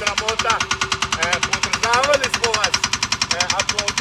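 A man talking over a parked tanker truck's diesel engine running at idle, its knock an even, rapid beat of about a dozen a second.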